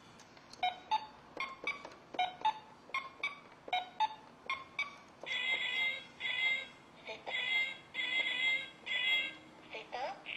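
Song intro played on children's electronic toy keyboards and a small harp: a pattern of short plucked and clicking notes about two a second, joined about five seconds in by repeated high, buzzy held toy tones.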